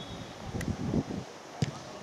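Football being kicked: a faint knock a little over half a second in, then a louder short thud about one and a half seconds in.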